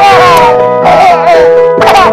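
Looped electric-piano background music with high-pitched, wavering calls laid over it, each sliding down in pitch: one at the start, one about a second in, and one near the end, like a cartoon whimper or howl sound effect.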